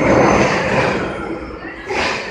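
Loud bowling-alley din with voices in it: a noisy rumble that swells early, fades, and swells again near the end.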